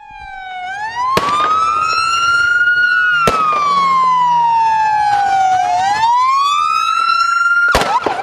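Police vehicle siren sounding a slow wail: a single tone rising, falling and rising again over several seconds. Three brief sharp clicks cut across it.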